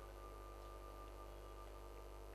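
Quiet pause with a steady low electrical hum, and a faint thin tone that starts at the beginning and fades out after about a second and a half.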